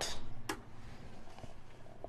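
Low, steady background hum with one sharp click about half a second in.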